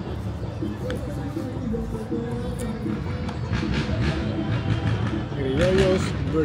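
Music playing with people's voices over it, the voices calling out louder near the end.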